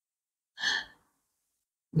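A single short breath, lasting under half a second, about half a second in, then silence until speech resumes at the very end.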